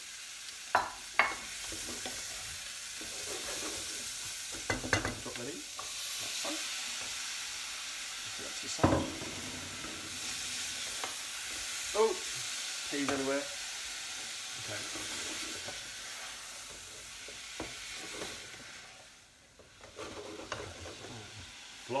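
Chopped onion, garlic and courgette sizzling in oil in a frying pan while a spoon stirs them, knocking sharply against the pan now and then. The sizzle dies down for a moment near the end.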